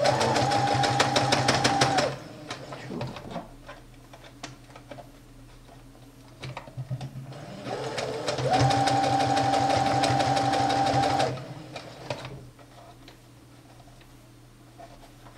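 Small household electric sewing machine stitching knit fabric in two runs: one for about two seconds at the start, and a second of about three and a half seconds from around eight seconds in. Each run has a steady motor whine over a rapid, even needle clatter. Between the runs there are light clicks of the fabric being handled and repositioned.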